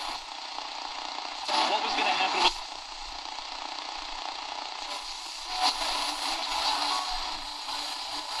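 Horologe HXT-201 pocket radio's speaker giving AM static and hiss while being tuned near the bottom of the AM band, with a weak, distant station's audio fading up through the noise about a second and a half in and again around six seconds.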